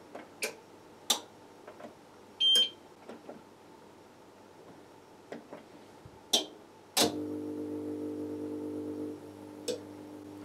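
APC Smart-UPS SMT2200I front-panel buttons clicking, with a short high beep from the UPS's beeper about two and a half seconds in. About seven seconds in a click is followed by a steady low electrical hum as the UPS is switched on through its front-panel control menu; the hum drops in level after about two seconds.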